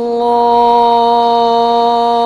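A muezzin's solo voice holding one long, steady note at the close of the adhan (Islamic call to prayer), with no ornament or pitch change after a slight settling at the start.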